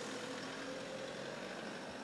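Hyundai ambulance van's engine running as it drives slowly past, a steady mix of engine and road noise.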